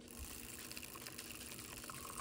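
Handheld milk frother whirring steadily as its wand whisks a shallow layer of instant espresso in a ceramic mug; faint, from a frother that its owner says doesn't really work.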